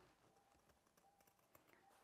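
Near silence, with a few faint short snips of scissors cutting fabric in the second half.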